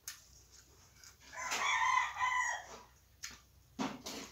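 A rooster crows once, about a second and a half in, a single call lasting over a second. A few short clicks of eating by hand off a metal plate come before and after it.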